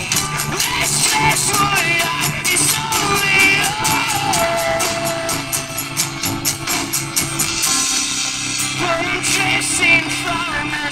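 Live rock band playing: strummed acoustic guitar and electric bass, a voice singing with one long held note midway, over a steady beat of sharp percussive hits.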